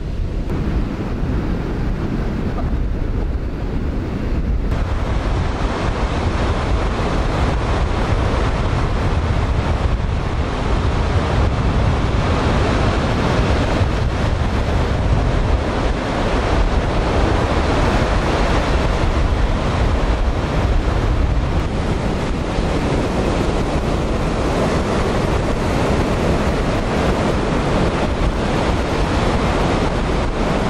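Strong wind buffeting the microphone over the steady rush of rough surf breaking on a sandy beach. The sound of the surf comes through more fully after about five seconds.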